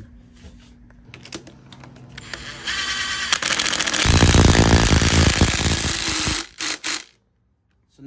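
Cordless impact driver spinning a crank arm bolt down onto the motor's spindle, then hammering it tight in a loud, rapid rattle for about two seconds, followed by two short final bursts.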